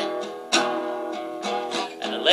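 Acoustic guitar strumming chords in a recorded song, in a gap between sung lines, with fresh strums about half a second in and again near the end.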